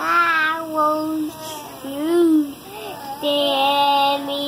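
A toddler singing wordlessly in drawn-out notes: a long held note, then a short note that rises and falls, then another long held note near the end.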